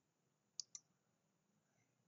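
Two quick clicks of a computer mouse, a fraction of a second apart, a little over half a second in; otherwise near silence.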